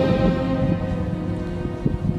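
Wind buffeting the camera microphone in an irregular low rumble, with a soundtrack's held string notes fading underneath.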